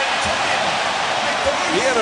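Basketball arena crowd cheering steadily, a dense wash of many voices after a big defensive play.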